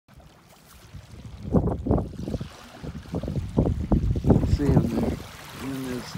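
Small waves washing over sand at the water's edge, with wind gusting on the microphone loudest about a second and a half in and again past the middle. A man's voice sounds briefly near the end.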